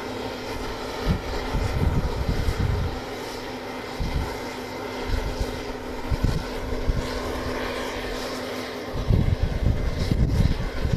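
LCAC hovercraft's gas-turbine engines and propellers running with a steady drone and a held tone that drops out near the end. Irregular low gusts of wind buffet the microphone.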